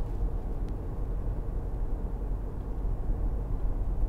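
Steady low road-and-tyre rumble with the hum of a 2.0-litre four-cylinder turbodiesel inside the cabin of a 2015 BMW 520d saloon cruising along. The ride is smooth, with no knocks or wheel-balance vibration.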